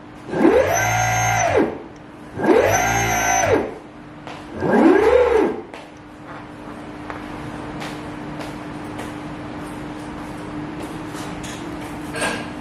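Brushless electric motors on a test bench, driven by a VESC controller from a Spin-Y2 thumb-wheel throttle, whining as they spin up and back down three times. The pitch rises and falls over about a second each time, and the third run is lower. After that a faint steady hum is left.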